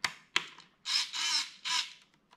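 Hobby micro servos whirring in three short, harsh bursts as they are driven from the radio transmitter's controls. Two light clicks come about a second before them.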